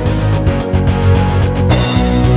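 Instrumental karaoke backing track (MR) of a Korean gospel song at a moderate tempo: a steady drum beat under bass, guitar and sustained chords, with a crash about a second and a half in.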